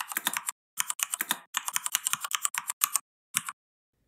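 Typing on a computer keyboard: quick runs of key clicks broken by short pauses, stopping shortly before the end.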